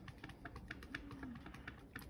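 Faint, irregular light ticks and crinkles of a wadded paper towel being dabbed again and again onto wet watercolor paper, blotting up paint to lift out cloud shapes.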